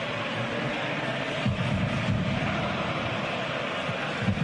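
Football stadium crowd noise: a steady din of many voices from the stands.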